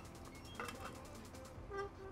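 Quiet room tone with no distinct event, and a brief faint hum near the end.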